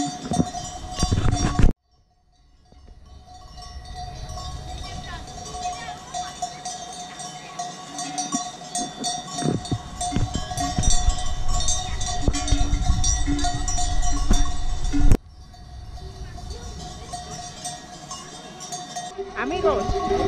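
Bells on a grazing flock of sheep clanking and ringing irregularly, with a brief break about two seconds in.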